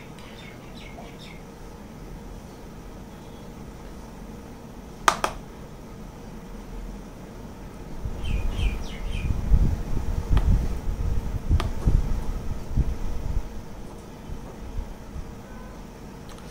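Faint bird chirps, a few quick notes at a time, near the start and again about halfway through, over quiet room tone. A single sharp click comes about five seconds in, and irregular low rumbles and bumps run through the second half.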